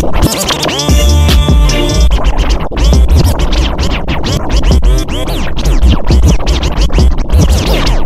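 Hip hop track without vocals: record scratching, heard as quick rising and falling pitch sweeps, over a heavy bass beat that comes in about a second in.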